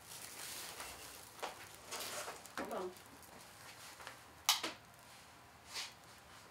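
Quiet room with a few faint handling sounds: light rustles and short sharp clicks, the loudest about four and a half seconds in and another near the end. A brief soft murmur of a voice comes about two and a half seconds in.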